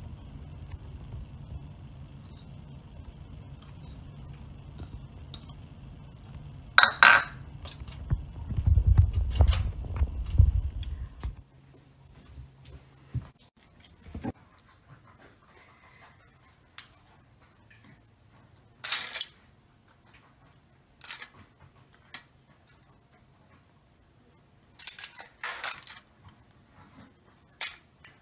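Scattered short rustles and clicks of hands working over a foil-lined baking dish while toppings are sprinkled onto salmon. A low hum sits under the first eleven seconds, swelling briefly near ten seconds, then drops away to quiet room tone.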